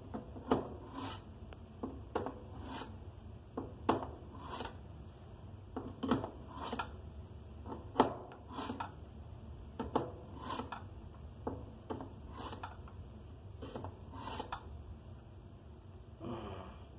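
Switchblade knife blade scraping through a sharpener in repeated strokes, about one every second and grouped roughly in pairs, each a sharp catch followed by a short rasp of steel on the abrasive.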